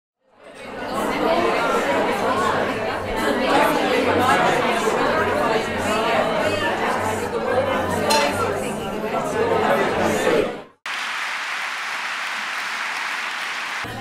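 Crowd chatter in a large hall: many voices talking at once, fading in at the start. About eleven seconds in it cuts off sharply and gives way to a steady, even rush of noise with no voices.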